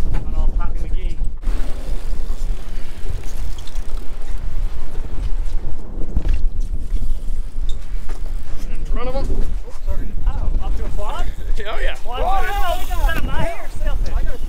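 Strong wind buffeting the microphone, a loud, uneven low rumble. Voices call out about nine seconds in and again near the end.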